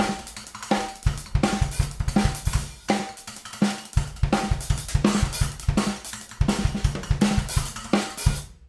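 Drum-kit groove of kick, snare and hi-hat, with an 8-inch Wuhan splash cymbal laid on a tom. Each tom stroke brings a short metallic, high-pitched bell-like ring, about every three-quarters of a second.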